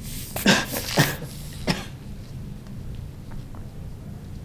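A person coughing: three short coughs within the first two seconds.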